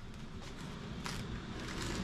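Quiet rustling, with a couple of faint taps about half a second and a second in, as a motocross helmet is lifted and pulled on over the head.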